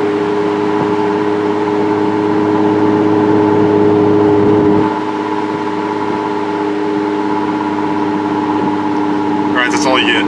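Jeep driving at a steady speed on a paved road, heard from inside the cab: a constant engine and road drone that holds one pitch and drops a little in level about five seconds in.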